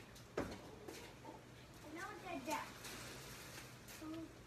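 Mostly quiet, with faint, indistinct voices briefly in the middle and a sharp knock about half a second in.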